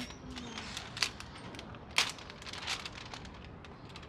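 Brown paper takeaway bag being handled and opened on a table: a string of crisp paper crinkles and rustles, the sharpest about one and two seconds in.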